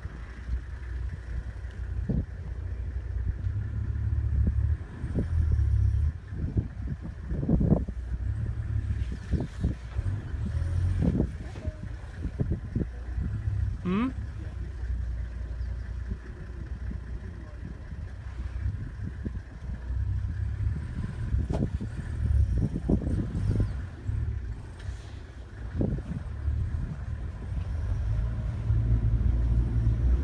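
A vehicle rumbling and jolting over rough ground, with many irregular knocks and bumps over a deep, uneven rumble.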